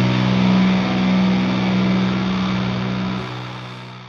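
A heavily distorted electric guitar chord held and ringing out, slowly fading away as the closing chord of a crust punk track.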